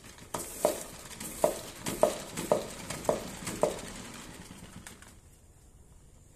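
A plastic spin mop is being spun dry in its bucket's spinner basket, with a run of sharp clicking strokes about twice a second as the handle is pumped. Under the clicks are the whirr of the spinning head and water spattering. The strokes stop about four seconds in and the sound dies away.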